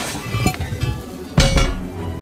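Animated sound effects of a lightsaber cutting through a round metal floor hatch, with crackling sparks, then a loud metallic clang about one and a half seconds in, over background music.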